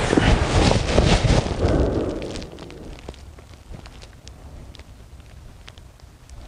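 Rustling and shuffling of a fabric pressure-mapping mat and clothing as a person rolls onto his stomach on a foam mattress. It is loud for about the first two seconds, then dies down to faint, scattered crinkles as he settles.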